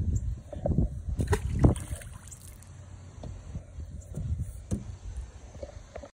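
A largemouth bass being let go into a pond, with a brief splash about one and a half seconds in, followed by faint knocks and a low rumble that fade out.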